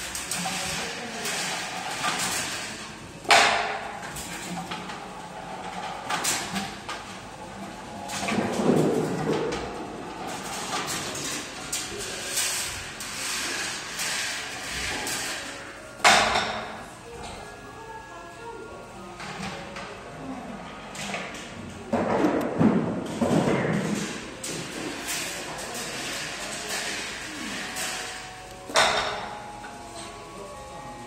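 Balls rolling and rattling along the metal wire rails of a rolling-ball machine, with a loud sharp clack that rings on, three times about thirteen seconds apart.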